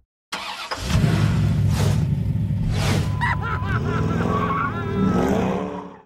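Car engine sound effect under a logo animation: after a short silence an engine bursts in and runs with a steady low rumble, two whooshes pass, wavering high tones follow, and a rising rev comes near the end before it fades out.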